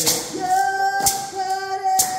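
Group singing led by a woman's voice holding one long steady note, with a beaded gourd shaker (shekere) keeping time: a sharp rattle about once a second.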